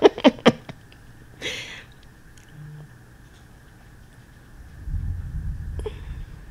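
A woman's laugh trailing off in a few short bursts, then a brief breathy hiss and, near the end, a low rumble like handling of the table or microphone, in a quiet small room.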